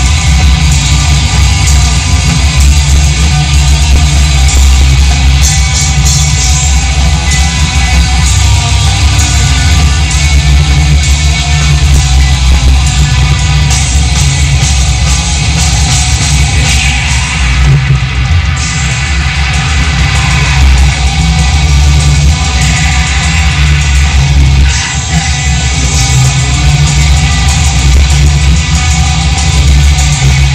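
Black metal band playing live: distorted electric guitar with bass and drums, loud and continuous.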